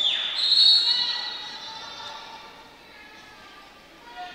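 A referee's whistle blows one high, steady blast that rings through the gymnasium and fades over a couple of seconds. It stops play so that the officials can reset the shot clock.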